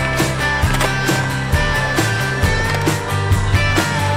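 Rock music soundtrack with a steady beat and guitar.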